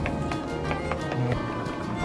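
Background music with a steady beat, about four beats a second.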